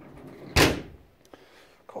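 A 1990 Range Rover two-door's door being shut: one solid slam about half a second in, latching in one go with a brief ringing tail and a small click after. It closes nicely, a sign of a well-set door gap.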